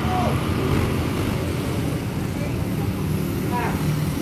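Steady street traffic noise with motorbikes and scooters passing, played back through a Zoom screen share, with faint snatches of voices.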